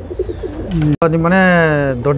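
Tumbler pigeons cooing softly in short low pulses, then a man's voice holds one long, slightly falling 'aah' for about a second.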